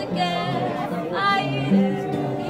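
A voice singing a drawn-out, wavering melody to an acoustic guitar accompaniment.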